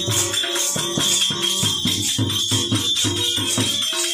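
Instrumental passage of a Gujarati bhajan without singing: a harmonium holding notes over a hand drum beating a steady fast rhythm, about three strokes a second, with bright jingling percussion.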